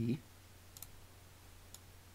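Two faint clicks at a computer, about a second apart, over a low steady hum.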